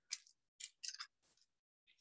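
Near silence, with a few faint brief ticks in the first second.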